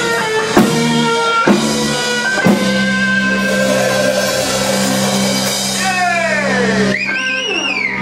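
Live rock band with electric guitars and a drum kit: a few drum hits, then a held chord ringing on, with sliding, wavering high notes near the end.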